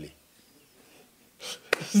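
After a short pause, a man breaks into a breathy, unvoiced laugh about a second and a half in, with a sharp click as it starts, running straight into voiced laughter and speech at the end.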